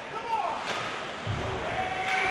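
Ice hockey rink sound: a short voice call, then a sharp knock of a puck or stick against the boards a little over half a second in, and a low thud near the middle.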